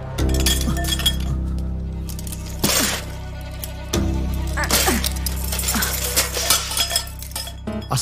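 Tense film background score: a sustained low drone with bright, glassy clinking and ringing accents, the loudest a little under 3 seconds in and again around 4 to 5 seconds in.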